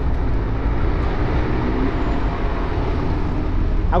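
Steady low rumble of a motorcycle being ridden along a city street: engine, tyre and wind noise on the bike-mounted camera's microphone.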